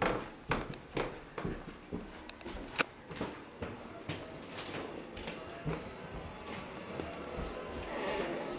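Soft background music, with a string of light clicks and knocks over it, most of them in the first three seconds.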